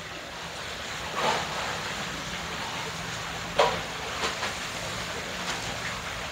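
Plastic bags crinkling and rustling as caramel popcorn is packed by hand, with two louder crinkles about a second in and midway, over a steady background hiss.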